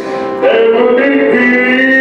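A man singing a song over instrumental accompaniment, holding a long note through the second half.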